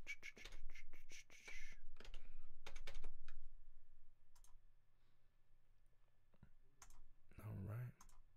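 Computer keyboard typing and clicking in a quick cluster over the first few seconds, then a few scattered clicks.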